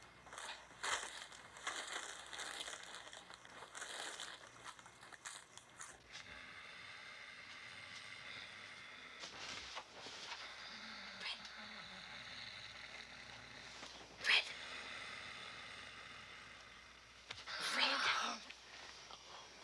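Rustling and crinkling, like packaging being handled, for the first six seconds. It gives way to a quieter stretch with one sharp click a little after halfway and a louder burst near the end.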